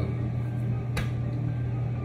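A steady low hum, with a single sharp click about a second in.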